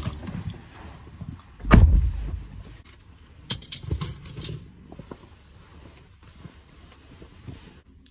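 Knocks and rattles of things being handled inside a car cabin: one heavy thump about two seconds in, then a few light clicks and jingles around the middle.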